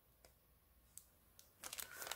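Near silence with a few faint ticks. From about one and a half seconds in there is a run of soft crinkles and rustles as hands handle sheets of patterned paper and card.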